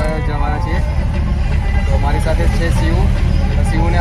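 Several voices talking over the steady low rumble of a moving road vehicle.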